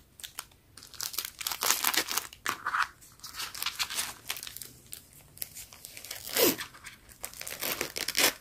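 Plastic wrappers on small packets of wipes and tissues crinkling and rustling as they are handled, in quick, irregular crackles with a brief lull near the middle.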